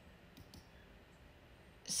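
A few faint, sharp clicks over quiet room tone, near the start and about half a second in.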